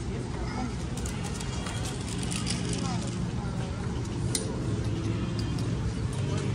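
Background voices of people talking at outdoor café tables and walking on a cobbled pedestrian street, over a steady low city hum, with scattered clicks and one sharp click a little past the middle.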